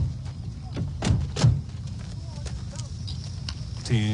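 Steady low background rumble with a few sharp knocks: one at the start, two about a second and a second and a half in, then fainter clicks.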